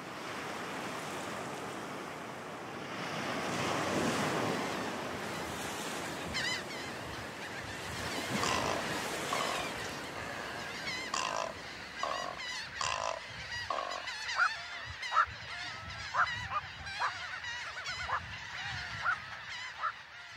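A nesting colony of waterbirds calling: short, repeated harsh calls that start about six seconds in and come more and more often, over a steady rushing background noise.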